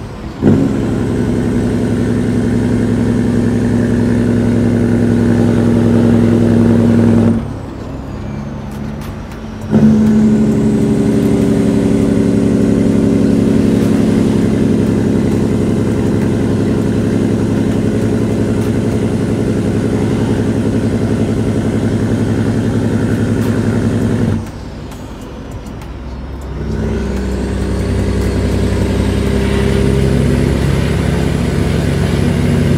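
Caterpillar 3406E inline-six turbo diesel pulling a Peterbilt 379, heard from inside the cab. Twice the engine note drops away for about two seconds and then picks up again, as between gear changes on the 18-speed transmission, with a faint high whine falling and rising along with it.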